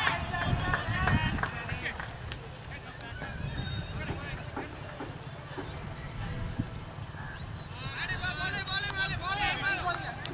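Indistinct voices of people chatting near the field, quieter in the middle and louder again near the end, over a steady low rumble.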